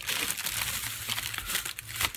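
Crinkling of plastic packaging as a pack of napkins is handled, a continuous run of small crackles.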